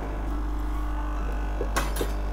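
Nespresso Momento 100 capsule coffee machine running with a steady hum during its first start-up, the owner taking it to be filling its boiler for the first time. A short click comes near the end.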